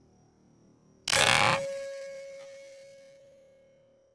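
An air rifle shot, heard as one sudden loud blast about a second in that lasts about half a second. A clear ringing tone follows and fades slowly over about three seconds.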